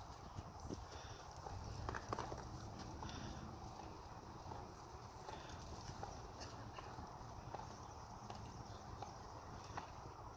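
Faint hoofbeats of a horse moving on sand arena footing, soft scattered thuds over a low steady rumble.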